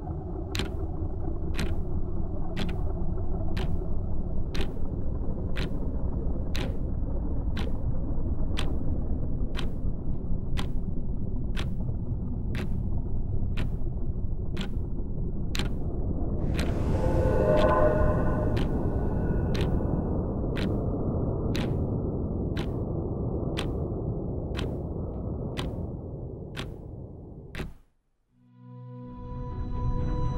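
Steady deep rumble of a spacecraft in flight, as film sound design, with a sharp tick repeating about every two-thirds of a second. The rumble swells briefly around the middle with a few higher tones, then fades near the end and cuts off.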